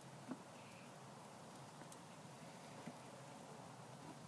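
Near silence: faint background hiss with a few faint short knocks, the clearest just after the start and two more later on.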